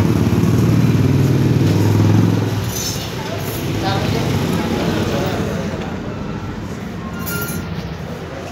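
A steady, low engine hum that fades out about two and a half seconds in, over voices and general clatter.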